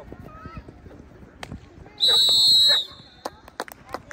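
A referee's whistle blown in one steady high blast about two seconds in, lasting just under a second, marking the play dead. Voices on the sideline around it.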